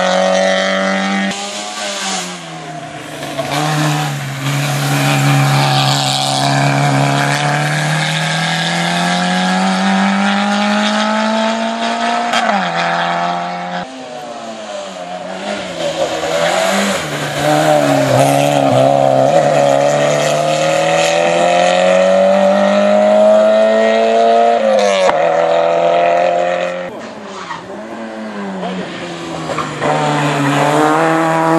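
Small four-cylinder rally hatchbacks driven hard up a hill-climb course, one after the other. Each engine's pitch climbs under full throttle and drops sharply at every gear change.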